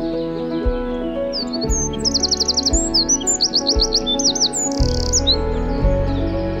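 Eurasian wren singing: a rapid run of high, sharply repeated notes and trills, beginning about a second in and lasting some four seconds. The song plays over soft background music with a low beat about once a second.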